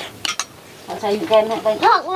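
Spoons clinking against bowls a few times during a meal, in quick succession near the start, then a voice speaking in the second half.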